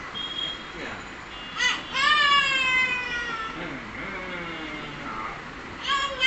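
A toddler's high-pitched vocal squeal: a short yelp about a second and a half in, then a long whining call that falls in pitch, followed by quieter babbling.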